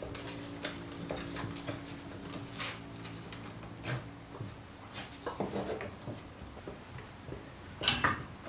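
Light, scattered metallic clicks and small knocks as a steel hose clamp is wrapped around the plastic body of a drill, over a faint steady hum that fades about halfway through.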